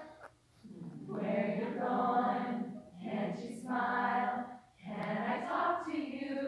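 Women's choir singing together in three sustained phrases, broken by short pauses for breath.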